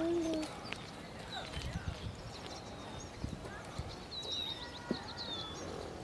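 Small birds chirping in short, high calls, mostly in the second half, over a few scattered soft low thuds.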